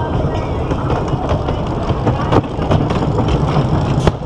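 Wooden roller coaster train rolling along its wooden track toward the lift hill: a steady low rumble from the wheels with irregular clacks and knocks.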